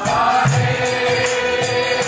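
Kirtan music: voices chanting a mantra over sustained held notes, with small hand cymbals (kartals) striking a steady rhythm and drum beats underneath.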